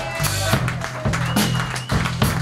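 Blues band playing live: electric bass line with drums and cymbals keeping a steady beat.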